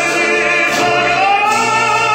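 Operatic tenor voice holding a long, full-voiced note that rises to a higher sustained pitch about halfway through, accompanied by a string orchestra.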